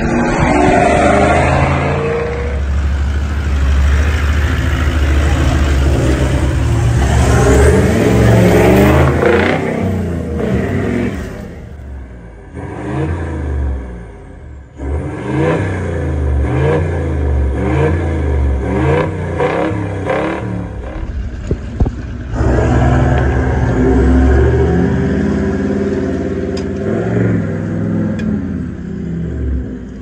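4x4 vehicle engines running and revving, rising and falling in pitch again and again, with the sound changing abruptly several times as one clip cuts to the next.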